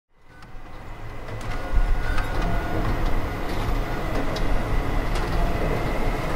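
Industrial machinery noise fading in: a steady low rumble with scattered metallic clanks and a thin, steady high whine.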